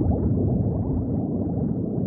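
Continuous underwater bubbling: a dense stream of quick little blips, each sliding up in pitch, at a steady level.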